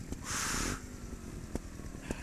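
Low, uneven rumble of a trials motorcycle engine. A short loud hiss breaks in about a quarter of a second in.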